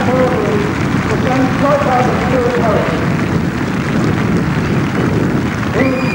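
Indistinct speech, distant and unclear, over a steady rushing noise of outdoor location sound. A brief rising whistle-like tone comes near the end.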